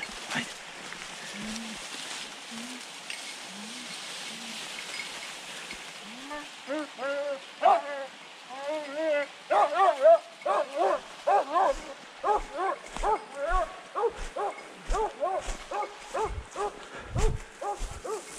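Hunting dog barking repeatedly on the boar hunt: a few faint, low barks at first, then quick, louder barks at about two a second from roughly six or seven seconds in. Low thuds of footsteps join in the second half.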